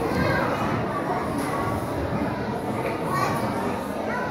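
A hall full of children chattering and calling out at once, a steady babble of many young voices.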